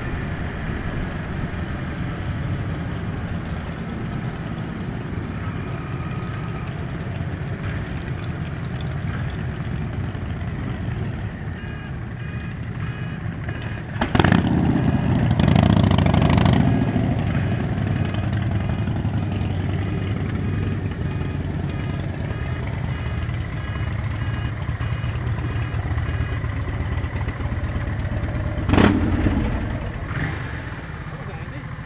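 Motorcycle engines running in town traffic, with road and wind noise on a helmet-mounted microphone. About 14 seconds in, a sharp knock is followed by a louder low exhaust rumble lasting a few seconds as a cruiser motorcycle rides close alongside. Another short knock comes near the end.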